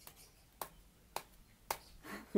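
Knife blade striking a dragon fruit cactus stem to cut the fruit free: four sharp, short clicks, about two a second.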